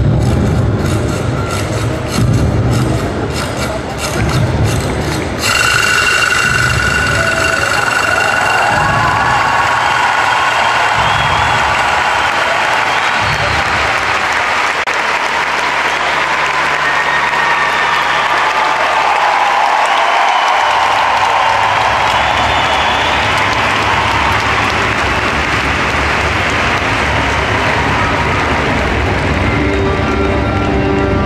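Music with a beat for the first five seconds or so, then a large audience applauding and cheering steadily for the rest of the time.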